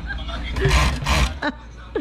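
Rustling of a mesh jersey being handled, with a noisy swish lasting under a second near the middle, over a steady low hum.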